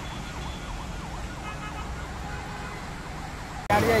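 Faint siren quickly wailing up and down over a steady background rush. Near the end it cuts abruptly to louder audio with a voice and a low hum.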